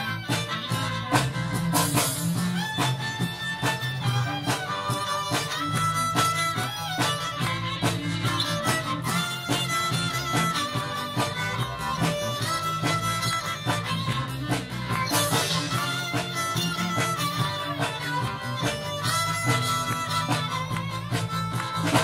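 A live jazz string band plays an instrumental pop mashup: violin, viola and cello bowing the tune over a drum kit and electric bass with a steady beat. Cymbal crashes come about two seconds in and again around fifteen seconds.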